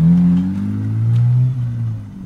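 Lexus IS200's 1G-FE straight-six accelerating away under a Speeduino standalone ECU, the engine note climbing, then easing off about one and a half seconds in.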